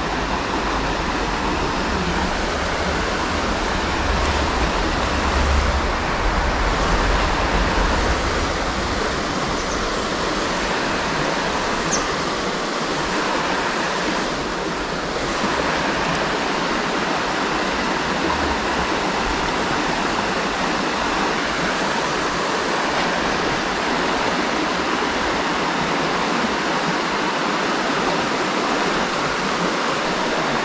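A shallow, stony river running over a riffle: a steady rush of flowing water. A low rumble sits under it for roughly the first eight seconds.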